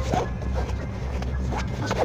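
Light handling noises, soft rustles and a few small clicks, over a steady low hum.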